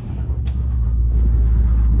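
A 2024 BMW X1 M35i's 2.0-litre turbocharged four-cylinder idling through a muffler-delete exhaust: a steady low rumble that grows a little louder over the first second, then holds.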